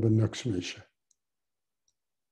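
A man speaking in a lecture, his voice stopping just under a second in, followed by silence broken only by two faint clicks.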